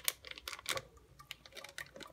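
Wire whisk clicking and scraping against the sides and bottom of an enamel saucepan as a liquid batter base is stirred, in a string of short, uneven clicks.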